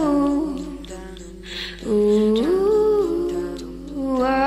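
A voice humming a slow, wordless melody in long held notes that slide from one pitch to the next. The first phrase fades out about a second and a half in, and a new, louder phrase begins just before two seconds.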